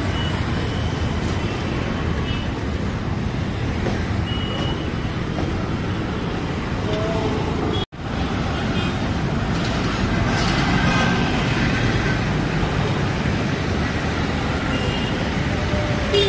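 Busy city road traffic: auto-rickshaws, buses and motorbikes running in a steady mass, with a few short horn toots. The sound cuts out for an instant about eight seconds in.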